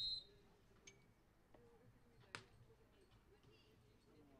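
A short, shrill referee's whistle blast right at the start, then a quiet stretch of beach-volleyball court sound with faint ball contacts and one sharp slap of a hand hitting the ball a little past the middle.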